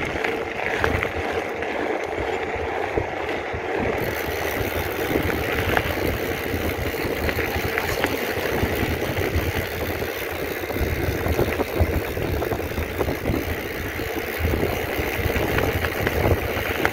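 Wind buffeting the camera microphone and a mountain bike's tyres rolling over a gravel road at speed on a descent, with scattered clicks and rattles from the bike.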